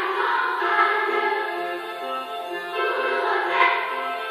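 A massed children's choir singing, holding long notes, with lower notes moving underneath.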